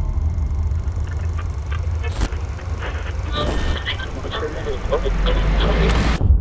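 A steady low rumble under a general noise, with indistinct voices and a single sharp click about two seconds in.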